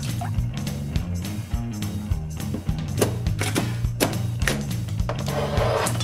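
Knife chopping through cooked chicken bones on a cutting board: several sharp chops at irregular intervals, over background music.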